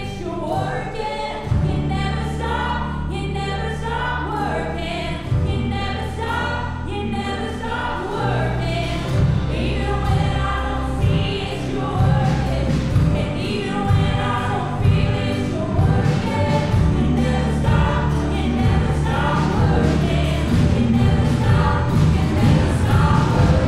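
Live contemporary worship band playing: a woman singing lead into a microphone with backing vocals over piano, electric guitar, bass and drums. The drums come in more strongly about eight seconds in and the music builds.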